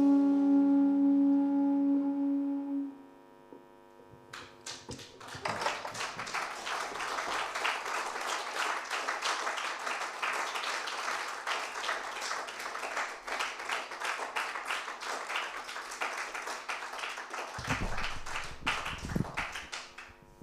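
A jazz quartet's final held chord, with tenor saxophone, rings on and stops about three seconds in. After a short pause the audience applauds with steady clapping until just before the end.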